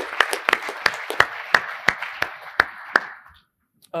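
Audience applause, a dense patter of many hands with one nearby clapper's claps standing out about three a second. It dies away about three and a half seconds in.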